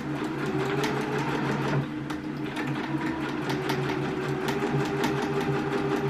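Electric domestic sewing machine running steadily, its motor hum laced with the needle's rapid, even ticking as it stitches satin fabric. It eases off briefly about two seconds in, then carries on.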